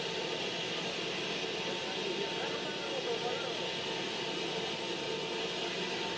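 Faint, steady engine noise from the motorcycle drag-race footage being played back, with a low murmur of voices under it.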